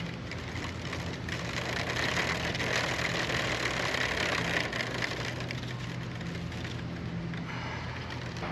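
Outdoor background noise: a steady low hum under a hiss that swells for a few seconds in the middle.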